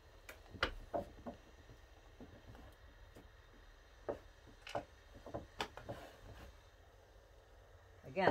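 Faint, scattered light clicks and knocks from a felt hat and its block being handled and shifted on a wooden worktable, a few a second at most, with quiet gaps between.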